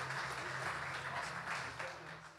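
Applause, thinning out and fading toward the end.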